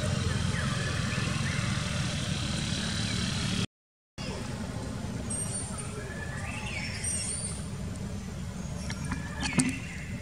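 Outdoor ambience dominated by a steady low rumble, cut by a brief dead silence about four seconds in. A few faint, high, gliding chirps or squeals come in the second half, the clearest near the end.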